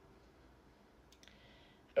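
Near silence with two faint clicks about a second in.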